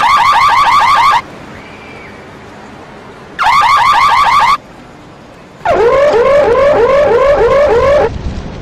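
Electronic car alarm sounding in three loud bursts of rapid rising chirps, about six a second, with short pauses between; the third burst, starting near the sixth second, is lower in pitch and runs longer.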